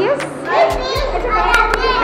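Young children's voices chattering and calling out, over adult speech.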